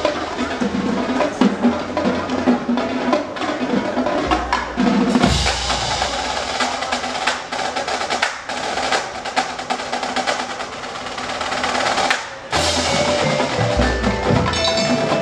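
Marching band playing, led by its percussion: rapid snare drum strokes and rolls over heavy bass drum hits, with mallet percussion from the front ensemble. The sound drops briefly near the end before the drums come back in.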